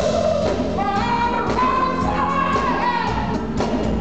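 Live blues band performing with singing, an electric guitar, keyboards and a drum kit.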